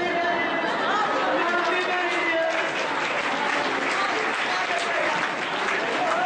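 A voice speaking, then an audience clapping from about halfway through, with a voice returning at the very end.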